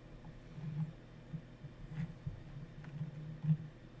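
Quiet room tone: a low, uneven hum with a few faint clicks.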